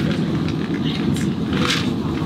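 Steady low rumble, with a few brief higher sounds over it.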